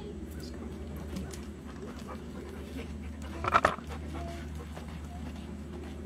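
Siberian husky panting, with one short, louder sound a little over halfway through.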